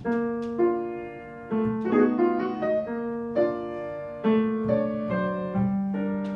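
Piano playing a slow melody over held notes, new notes struck every half second or so. A couple of sharp clicks sound just after the start.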